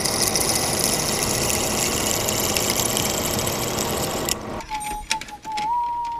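Drill press cutting a hole through a thick metal plate: a steady cutting and grinding noise as the bit bores in, stopping abruptly about four seconds in. It is followed by a few clicks and a thin steady tone.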